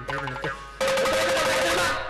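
Carnatic percussion ensemble of mridangam, ghatam and morsing playing. Separate strokes sound for a little under a second, then a loud, dense, fast run of strokes over a steady held tone.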